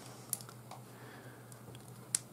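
Handling noise from three-strand rope being worked by hand: a few faint, scattered clicks and light rustles as the strands and a small tool are handled.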